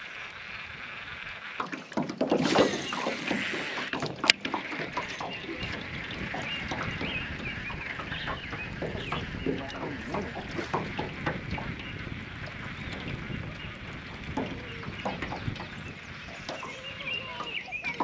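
A baitcasting reel cast and retrieve: a brief whir of the spool a couple of seconds in, a sharp click a little past four seconds as the reel is engaged, then the reel cranked steadily with a rapid run of small clicks.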